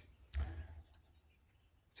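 A single soft thud about a third of a second in, then near silence.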